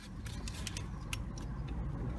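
Steady low background noise with a few light clicks as a gloved hand moves among rubber hoses and wiring in the engine bay.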